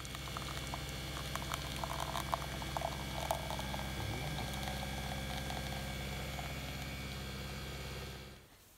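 Nespresso capsule coffee machine brewing: a steady motor hum with a crackling patter as the coffee streams into a ceramic mug.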